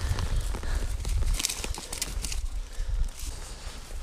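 Wind rumbling on the microphone, with scattered rustling and crunching of dry reeds and grass underfoot.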